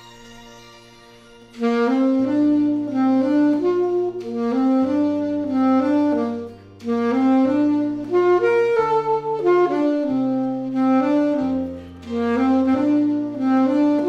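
Alto saxophone playing a melody over a backing track with a bass line. The saxophone comes in about a second and a half in, after a soft held chord, and breaks off briefly twice between phrases.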